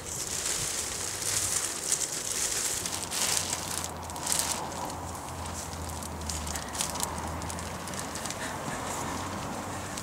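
Polythene sheeting of a polytunnel rustling and crinkling as it is handled, lifted and pushed aside, with many irregular small crackles.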